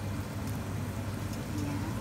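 Steady low hum.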